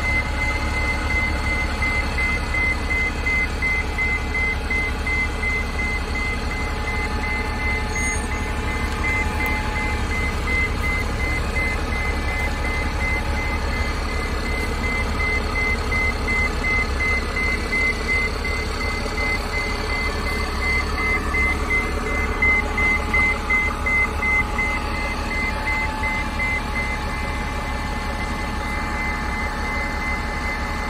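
A city transit bus backing up slowly: its reverse alarm sounds a steady, evenly repeating high-pitched beep over the low, steady running of the bus engine.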